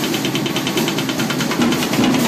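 Acoustic drum kit played fast: a rapid, even run of stick strokes on the drums, about twelve a second, like a drum roll or fill.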